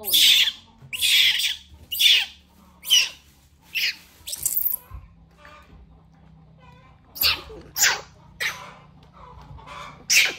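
Baby monkeys sucking milk from plastic feeding bottles: a run of short, hissy, squeaky sucks about one a second, a pause of about two seconds midway, then three more.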